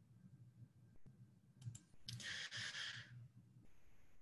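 Two quick computer-mouse clicks about a second and a half in, advancing the presentation slide, followed by about a second of breathy exhale close to the microphone, over a faint low hum.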